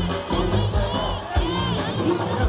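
Concert crowd shouting and cheering over a live band, with a kick drum thumping steadily about twice a second.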